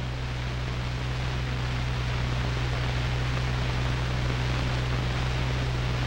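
Steady hiss with a low, constant hum underneath: the background noise of an old film soundtrack between lines of narration, with no other sound.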